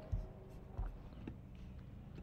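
A few faint, soft knocks from a computer mouse being moved and clicked on a desk, over a low steady room hum.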